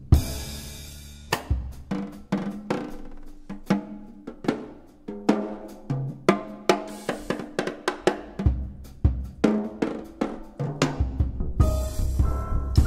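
Jazz drum kit played on its own, a drum solo: snare, bass drum and tom strikes with cymbals in an uneven, busy pattern. It opens with a cymbal crash that rings for about a second.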